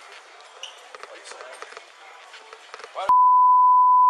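Faint department-store background of distant voices and small clicks, then about three seconds in a loud, steady, single-pitch censor bleep cuts in and replaces all other sound.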